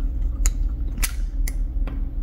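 About four short, sharp clicks, roughly half a second apart, from handling a pen-style eye-corrector applicator, over a steady low hum.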